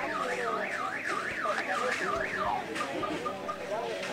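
An electronic alarm siren warbling rapidly up and down in pitch, about three sweeps a second, then switching to a few short beeps near the end, over faint background voices.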